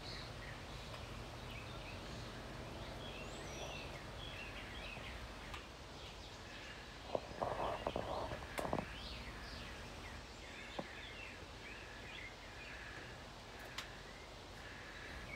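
Faint outdoor ambience: a steady low background hum with small birds chirping faintly and repeatedly, and a short burst of noise about seven to nine seconds in.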